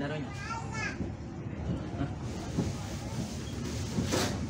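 Passengers' voices, children's among them, heard mostly in the first second, over the steady low rumble of a passenger train pulling slowly away.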